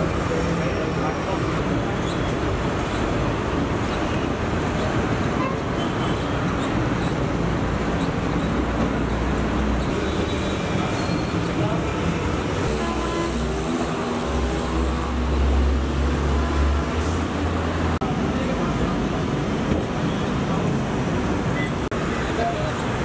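Steady road traffic noise with indistinct voices. A low vehicle engine hum grows louder for a few seconds about two-thirds of the way through, then fades.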